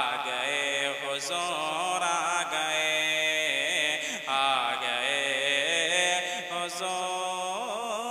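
A man singing a naat, an Urdu devotional song, into a microphone, drawing out long wavering melodic lines without words breaking through.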